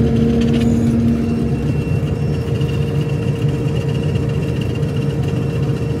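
Claas Dominator combine harvester running steadily, heard from inside its cab, as the unloading auger is engaged to empty the full grain tank into a trailer. Over the constant engine drone, a lower hum fades out and a thin high whine comes in about two seconds in.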